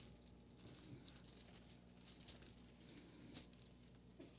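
Faint rustling of Bible pages being turned, with a few soft ticks, over a low steady hum.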